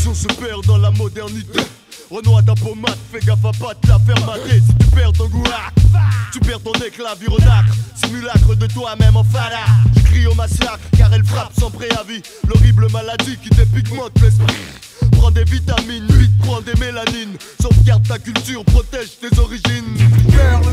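1990s French rap track: a rapper's voice over a hip-hop beat with a heavy, repeating bass line.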